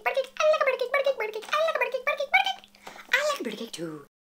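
A high-pitched voice making quick, choppy, wordless sounds, with a steady low hum underneath; the sounds thin out and stop near the end.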